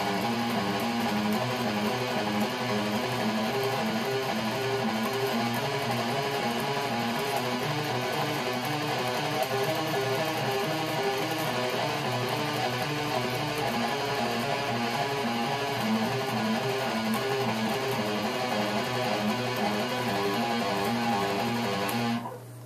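Electric guitar picked fast and evenly on one string in repeating groups of three or four notes, a right-hand speed drill, the short note pattern cycling steadily without a break.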